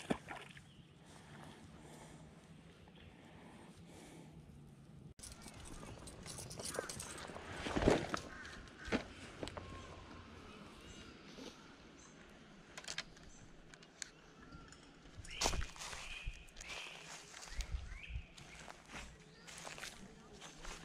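Handling noise: scattered knocks and rustles of fishing gear being moved about, then footsteps on dry leaves and dirt near the end.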